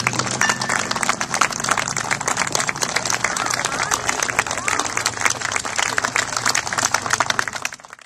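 Audience applauding, with voices calling out, fading out near the end.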